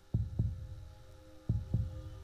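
Heartbeat sound effect in a trailer soundtrack: low double thumps, lub-dub, twice, over a faint sustained drone.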